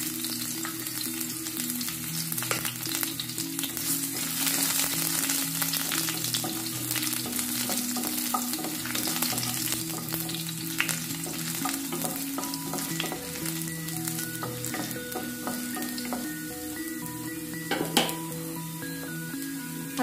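Small chopped pieces frying in hot sunflower oil in a stone-coated nonstick pan, giving a steady sizzling crackle, with a wooden spatula stirring through it. A sharper knock comes near the end.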